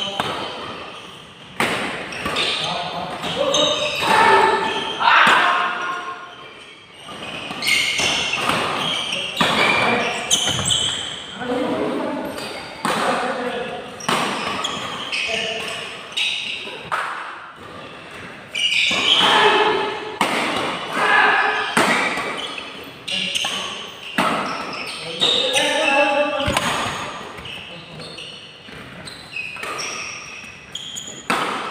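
Badminton doubles rally: racket strings striking the shuttlecock again and again at an irregular pace, mixed with the voices of players and onlookers, in a large indoor hall.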